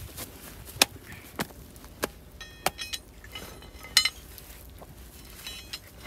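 A series of sharp metallic clinks, about five, some ringing briefly, around a steel flywheel ring gear being heated in a small wood fire before it is fitted.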